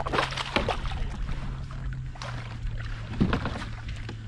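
Water splashing and sloshing at a small boat's side as a hooked bass is played and brought toward the landing net, with irregular knocks of gear handling. A steady low hum runs underneath and drops slightly in pitch about halfway through.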